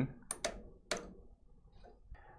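Hard plastic clicks as pinch rollers are pulled off the feed-roller levers of a Melco EMT16X embroidery machine: three sharp clicks in the first second, then a faint one near the end.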